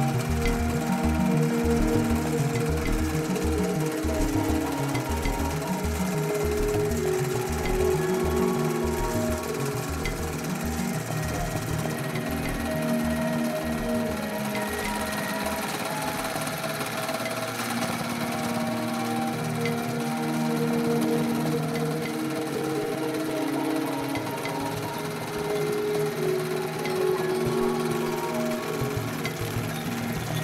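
An embroidery machine stitching at speed: a rapid, steady chatter of needle strokes, louder in the first half. Background instrumental music plays over it.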